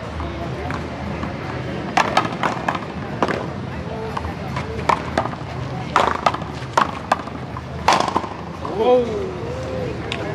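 One-wall paddleball rally: a dozen or so sharp hits of the ball off the paddles and the wall, coming in quick pairs between about two and eight seconds in. A voice follows near the end.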